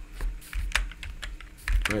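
Computer keyboard keystrokes: an irregular run of key clicks as a ticker symbol is typed, with a typo backspaced and retyped.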